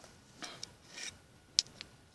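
A knife blade scraping at a hard, dry jucá seed pod held in the hand, cracking it open to get at the seed. There are a few short rasping scrapes, then a sharp click about one and a half seconds in.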